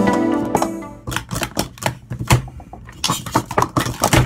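Speed Stacks plastic sport-stacking cups clacking rapidly and irregularly as they are stacked up and swept down on the mat, starting about a second in as background music fades out.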